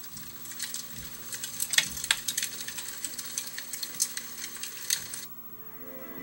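Campfire crackling sound effect from a tablet story app: a dense run of pops and crackles that cuts off suddenly about five seconds in.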